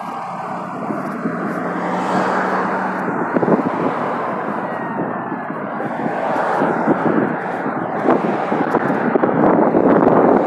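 Road traffic: cars and a pickup truck passing close by on a busy road, giving a steady wash of tyre and engine noise.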